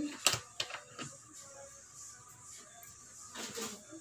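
Handling of a plastic cooking-oil bottle: a sharp click about a quarter second in, a few lighter clicks, then a short crackle of plastic near the end.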